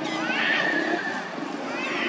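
Macaque giving high-pitched squealing calls: one long squeal about a quarter second in, and a second starting near the end.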